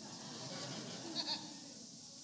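Faint, indistinct voices and laughter from the audience, low and scattered under the speaker's pause.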